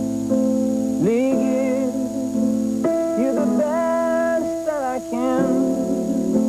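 A man singing sliding, vibrato-laden melodic phrases over sustained keyboard chords. There are no sung words, and short gaps fall between phrases, with a rising slide about a second in.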